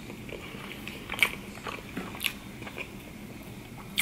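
Close-miked chewing of a sushi roll: a run of wet mouth clicks and smacks, the sharpest about a second in and again a second later.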